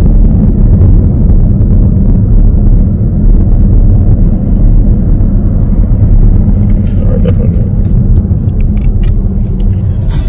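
A car travelling at motorway speed, heard from inside: a loud, steady low rumble of road and wind noise. A few faint clicks come near the end.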